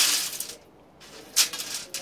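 Wood pellets pouring from a metal bowl into the sheet-metal canister of a homemade TLUD pellet stove, a rattling rush that trails off within the first half second. A single sharp clink comes about a second and a half in.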